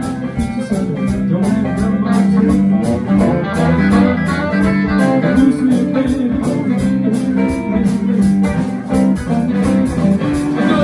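Live blues band playing an instrumental passage with no vocals: electric guitars over bass and drums, and a steady beat on the cymbals.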